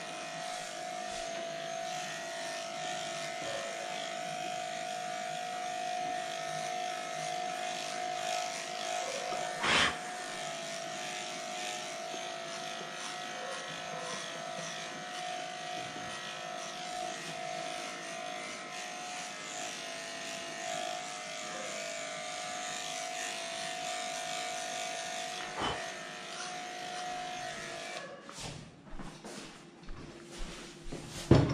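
Electric dog-grooming clippers running steadily as they cut through a matted coat, with a couple of brief knocks. The hum cuts off about two seconds before the end.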